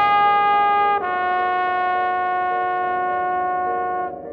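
Jazz horns, a trombone with a tenor saxophone, holding long sustained notes in harmony. They move to a new held chord about a second in.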